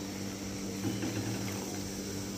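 Water poured from a plastic bottle into a curry cooking in a steel kadai, a soft splashing pour, over a steady low hum.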